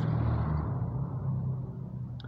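Low engine hum of a passing road vehicle, fading away.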